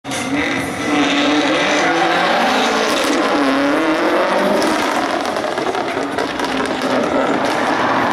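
Subaru Impreza rally car's engine revving up and down, its pitch rising and falling as it is driven hard around a tight cone course, with tyre noise underneath.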